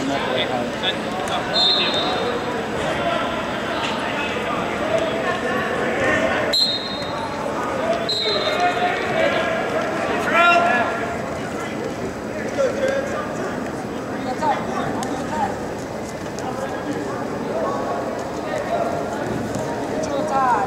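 Indistinct chatter and shouting of spectators and coaches around a wrestling mat in a gymnasium, at a steady level, with three short high-pitched tones about 1.5, 6.5 and 8 seconds in.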